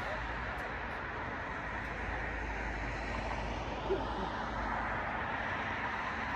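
Steady outdoor background noise: an even low rumble with hiss, with no ball strikes. A brief short falling tone sounds once about four seconds in.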